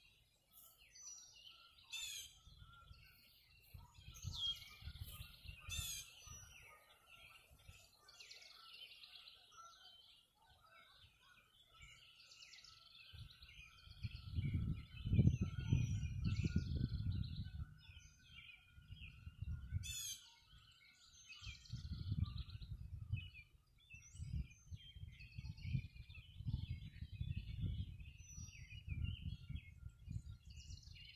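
Dawn chorus of many songbirds chirping and trilling, with a low rumble that swells and fades irregularly. The rumble is loudest about halfway through and keeps returning in the second half.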